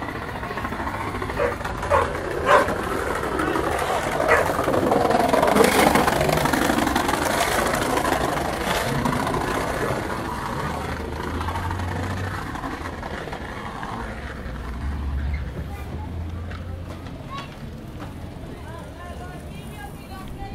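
Busy city ambience: many people talking at once, with traffic rumbling by. A few sharp knocks come in quick succession about two seconds in, and a wash of noise swells around five to nine seconds in, then eases off.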